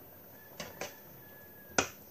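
A metal spoon knocking against a metal pan of sauce: two light clinks about half a second in, then one sharp, louder clink near the end.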